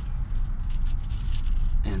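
Aluminium foil crinkling and rustling in short bursts as hands pull apart cooked chicken on it, over a steady low rumble.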